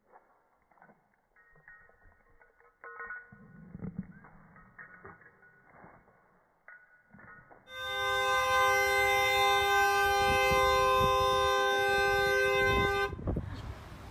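Faint clicks and rustles, then about eight seconds in a loud, steady, horn-like chord of several held tones that lasts about five seconds and cuts off.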